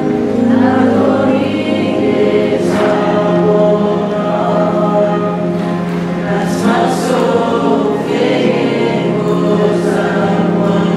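A small choir singing a farewell song together, with sustained notes over a steady low tone.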